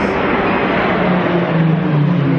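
Three Pilatus PC-7 Mk II turboprop trainers flying overhead in formation, their engines and propellers making a loud, steady drone whose pitch sinks slightly toward the end.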